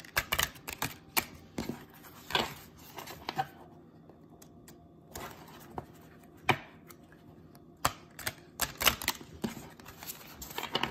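A deck of tarot cards shuffled by hand: irregular clicks and snaps of cards striking one another. There is a lull about four seconds in, then a quicker run of snaps near the end.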